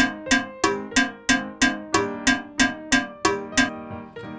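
Licence holder's rehearsal click track playing back: a steady run of sharp, pitched, ringing clicks about three a second, stopping shortly before the end. It sounds horrendous.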